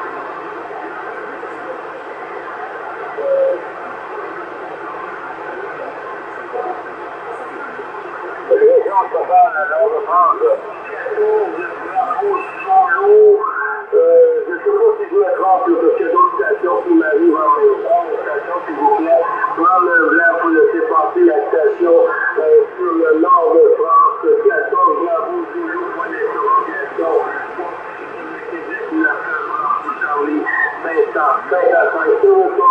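CB radio receiver on 27.625 MHz giving out steady static hiss. From about eight seconds in, weak, garbled voices of distant stations break up through the noise, as skip propagation brings them in.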